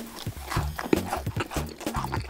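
Close-miked chewing of a macaron topped with piped buttercream: a quick run of sticky, crunchy mouth clicks and smacks as the shell and cream are bitten and chewed.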